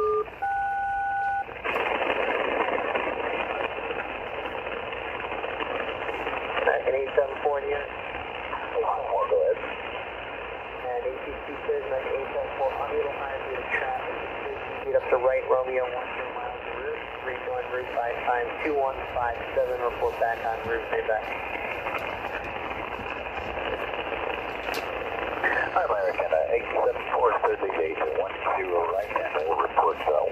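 Handheld receiver on the 8918 kHz upper-sideband aeronautical channel: a SELCAL two-tone call ends about a second and a half in, followed by steady shortwave band noise with faint, garbled voice transmissions coming and going through it.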